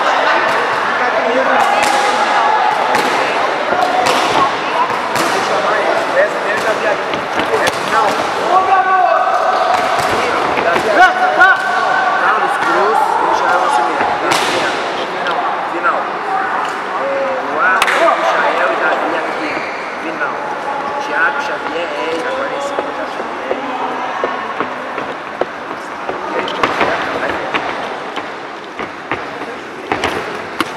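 Boxing gloves landing punches, a string of sharp slaps and thuds, under shouting from the corners and spectators.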